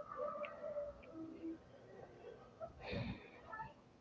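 Faint voice-like murmuring, with one short noisy burst about three seconds in.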